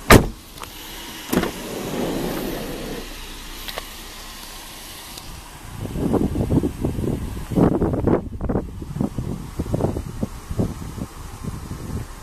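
Minivan sliding side door unlatching with a sharp click, then rolling open along its track for about a second and a half. Later a run of irregular knocks and rustles.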